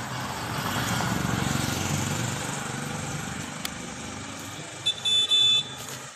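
A road vehicle passing: engine rumble and road noise swell over the first couple of seconds and then fade. Near the end come two short, high-pitched beeps, the second a little longer.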